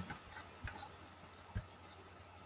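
A few faint, isolated clicks of computer keys, two or three in all, after a burst of louder typing just before.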